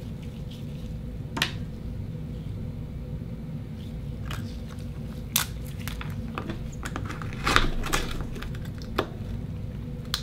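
Akoya oyster shells and a steel oyster knife clicking and scraping against a wooden cutting board as the oysters are handled and pried open: a scattered handful of sharp clicks, the loudest cluster a little past the middle, over a steady low hum.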